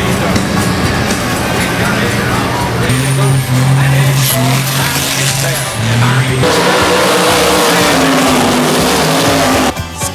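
A big truck's engine running hard during a smoky burnout, held at a steady high note for a few seconds. Near the end the pitch shifts up, and then the sound cuts off suddenly.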